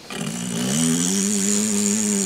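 A man's voice holding one long, steady, buzzing drone at a low pitch, made as a mocking 'loser' noise. It swells in just after the start and holds level.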